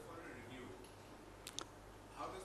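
Quiet pause in a press room with faint distant voices, and two quick sharp clicks about one and a half seconds in.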